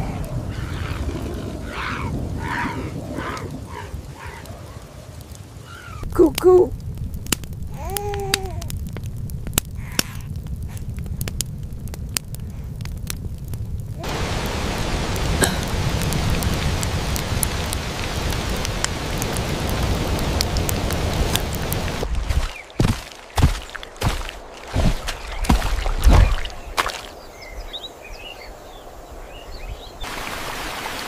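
Sound-designed thunderstorm ambience: steady rain with a crackling campfire, and a run of heavy thunder booms in the last third.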